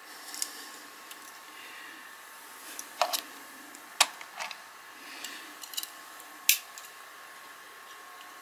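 Clicks and taps of a small diecast toy car being handled and set down on a plastic display turntable, the sharpest about 3, 4 and 6.5 seconds in. A faint steady hum from the turntable's motor runs underneath.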